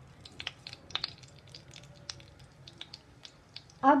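Cumin seeds crackling and spluttering in hot ghee as a tempering: scattered sharp little pops and ticks, several a second, over a faint low hum.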